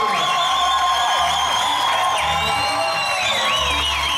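Dance music playing: short repeated bass notes under a high melody line that holds, glides and wavers.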